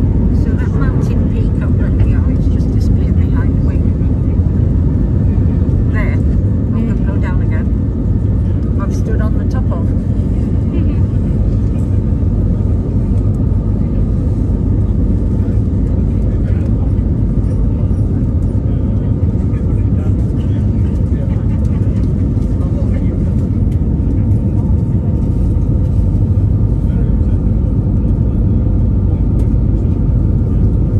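Cabin noise of an Airbus A320neo climbing out just after takeoff: a loud, steady rumble of its CFM LEAP-1A engines at climb power and the rush of air past the fuselage, heard from a window seat over the wing. Faint voices are heard under it in the first several seconds.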